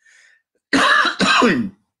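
A man clearing his throat in two quick rough rasps, lasting about a second and starting near the middle.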